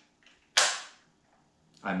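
A single .22LR rifle shot from a 3D-printed bullpup AR-15, a sharp crack about half a second in that dies away within half a second.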